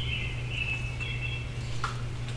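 Songbirds singing, their thin high notes overlapping, with a short lower call near the end, over a steady low hum.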